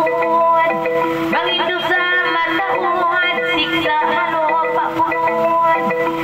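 A woman sings a Tausug kissa into a microphone over an electronic arranger keyboard playing a xylophone-like, gabbang-style accompaniment with sustained notes underneath.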